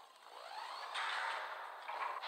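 Animated-film sound effects of a giant planet-sized robot's mechanical body transforming. A rising sweep is followed by a loud mechanical rushing from about a second in, which surges again near the end.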